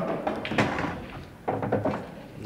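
A pool shot on an English eight-ball table: the cue striking the cue ball, sharp ball-on-ball clicks about half a second in and again near the end, and a ball dropping into a pocket with a thunk.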